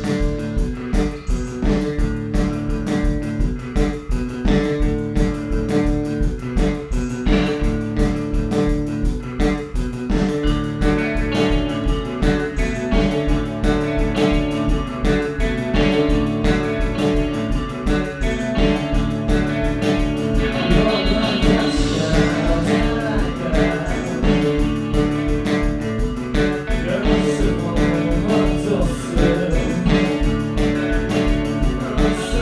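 Indie rock band playing live: a steady drum beat with bass and electric guitar, starting a new song. A voice comes in singing about twenty seconds in.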